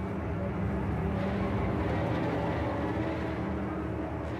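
A steady, low droning hum made of several held low pitches over a soft hiss.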